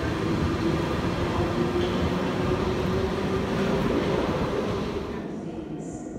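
London Underground tube train running along a station platform, a steady rumbling noise with a steady hum through it, dying away about five seconds in.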